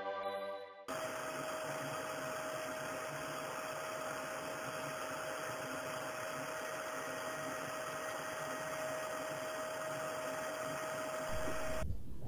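Upright vacuum cleaner running on carpet: a steady rushing motor noise with one steady tone in it. It starts abruptly about a second in, after music fades, and cuts off just before the end.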